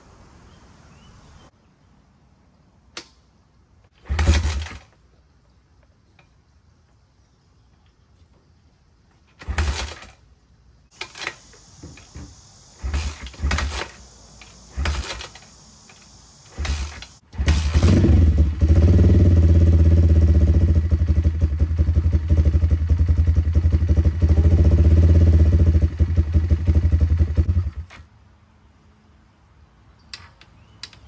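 A new YCF Pilot 150e pit bike's single-cylinder four-stroke engine being kickstarted on its cold first start, with the battery dead. A series of kicks give short bursts of firing, then the engine catches a little over halfway through and runs steadily for about ten seconds before it cuts off. The earlier kicks were made with the choke on, which the owner thinks he was not supposed to use.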